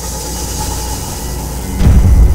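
A rumbling noise swells and grows louder, then breaks into a heavy low boom near the end, as ominous music comes in.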